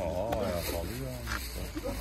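A man's voice: a drawn-out vocal sound with a strongly wavering pitch in the first half second, then short bits of talk.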